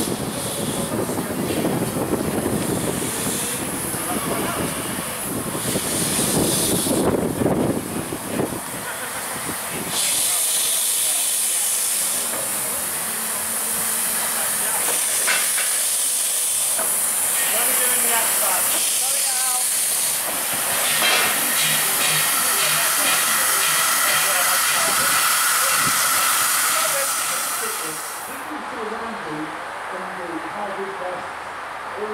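Polish 'Slask' class 0-8-0T steam tank locomotive moving slowly, with a loud steady hiss of escaping steam that starts about a third of the way in and stops abruptly near the end.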